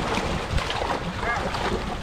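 Hands splashing and churning shallow muddy water while grabbing at a fish, over a steady low rumble.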